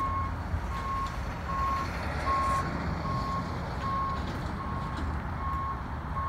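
Vehicle backup alarm beeping: a single steady-pitched beep repeated evenly, a little more than once a second, over a low outdoor rumble.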